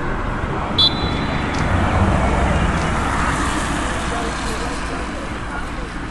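A referee's whistle, one short blast about a second in, over distant voices on the pitch and a steady low rumble.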